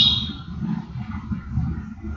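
A man's low, drawn-out voice murmuring with no clear words, opening with a brief high-pitched tone.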